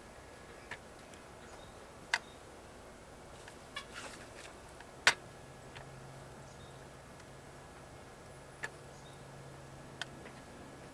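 Lead casting at a bottom-pour lead furnace into a buckshot mold: a handful of short, sharp metallic clicks and taps from the mold and pour lever, the loudest about halfway through. A faint low hum sets in about halfway and holds on.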